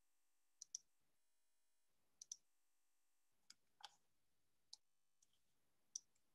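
Faint computer mouse clicks against near silence, a scattering of single clicks and quick double clicks, made while starting a screen share of presentation slides.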